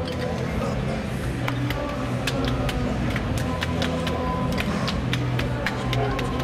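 Indistinct backstage chatter over a steady low hum, with many sharp, irregular clicks scattered through it.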